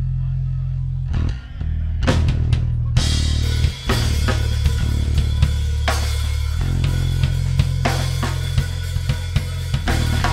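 Rock band playing live: a loud held low bass, with drum hits coming in about two seconds in and the full band, snare, bass drum and cymbals, from about three seconds.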